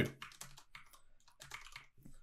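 Typing on a computer keyboard: a scattered, irregular run of quiet key clicks.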